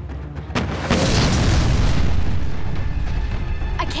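Explosion sound effect from a combustion-bending blast: a sharp crack about half a second in, then a loud boom and rumble that dies away over the next few seconds, with background music under it.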